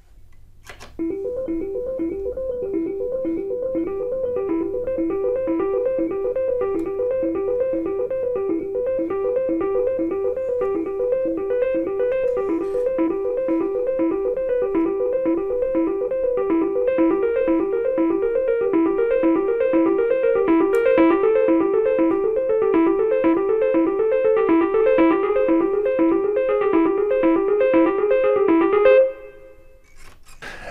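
Amped Elektra, a sampled 1970s Hohner Elektra electric piano, playing a fast, evenly repeating broken-chord figure. It starts about a second in and stops about a second before the end.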